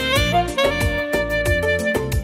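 Alto saxophone playing the melody, a few short notes then one long held note, over a backing track with a steady drum beat.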